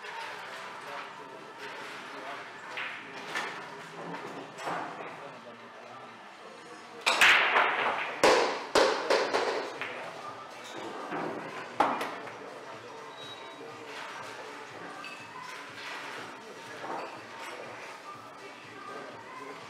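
Pool balls clacking: a burst of sharp knocks about seven seconds in, several in quick succession over about two seconds and fading, then one more single click near the twelve-second mark, over a murmur of voices in a large hall.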